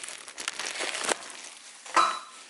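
Irregular crinkling and rustling from the camera being handled and carried, with a few sharper clicks among it.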